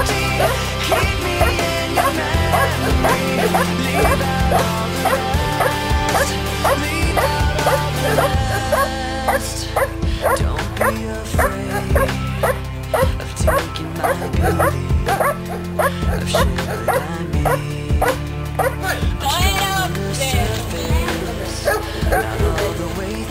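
Dog barking repeatedly at a helper in a hiding blind, the hold-and-bark of protection training, over music with singing.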